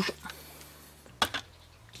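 Quiet room tone with a faint steady low hum, and one short click about a second in.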